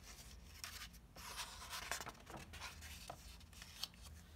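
Paper rustling and sliding as a picture book's page is turned by hand, with a light tap near the end.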